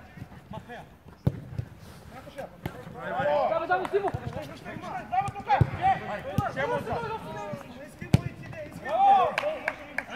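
Several overlapping voices shouting during a small-sided football match, growing busier about three seconds in, with a few sharp thuds of the ball being kicked, the loudest one about eight seconds in.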